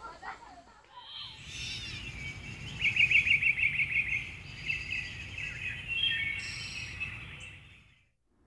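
Birds chirping, with a rapid trill a few seconds in, over a steady low outdoor background. The sound fades out just before the end.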